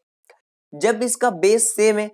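A man's voice speaking: silence with a faint tick at first, then talking from under a second in.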